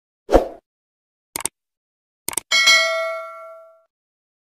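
Subscribe-animation sound effects: a short soft thump, two quick pairs of clicks, then a bell ding that rings out and fades over about a second.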